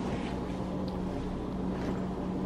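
Steady low hum in a room, with faint rustling of a cotton jacket being pulled on about a second in and again near the end.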